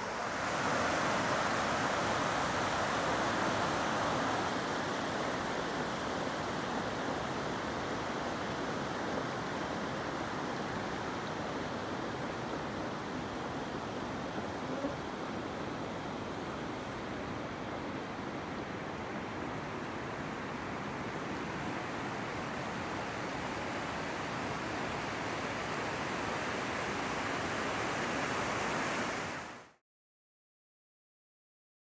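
Cooper Creek floodwater flowing over the causeway, a steady rushing of water that is a little louder in the first few seconds and cuts off suddenly near the end.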